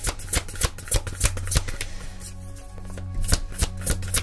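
A deck of tarot cards being shuffled by hand: a quick run of papery card clicks and slaps that eases off for about a second around the middle, then picks up again.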